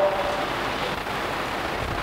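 Steady, even hiss of background room noise, with no speech.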